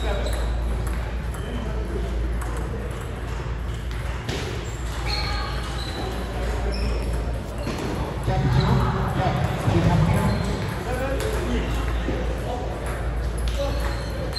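Table tennis ball clicking off rackets and the table in play, sharp clicks at uneven spacing over a steady low hum. Voices are loudest from about eight to ten seconds in.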